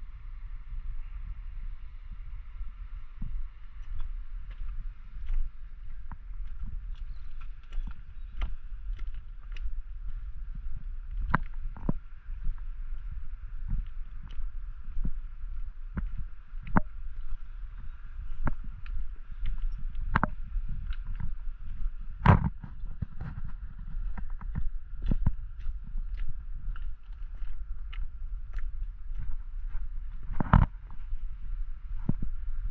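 Footsteps on a rough stone-paved path, irregular crunching and knocking steps about once or twice a second, with one louder knock about two-thirds of the way through. Under them runs a steady low rumble and a faint steady hiss.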